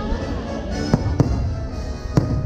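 Fireworks shells bursting over the show's music soundtrack, with two sharp bangs about a second in, a quarter second apart.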